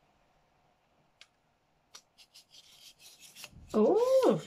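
Telescoping metal pole of a selfie-stick tripod being pulled out: a few clicks, then a dry rubbing rasp of the sliding tubes in the second half. Near the end comes a short, wordless vocal exclamation that rises and falls in pitch, the loudest sound.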